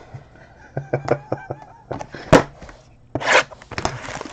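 A man's short laugh, with trading-card packs being handled on a tabletop: a sharp tap a little past halfway, then a brief rustle.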